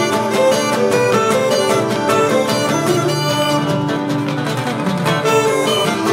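Live Cretan folk music from a small ensemble: plucked guitar strings keep a busy rhythm under held melody notes from a small wind pipe and a bowed Cretan lyra.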